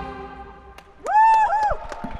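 Outro jingle: a held musical tone fading away, then, about a second in, a loud sting of two swooping tones, each rising and then falling, with a few sharp clicks.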